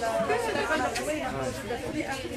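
Several people talking at once: overlapping chatter of voices in a crowded tent.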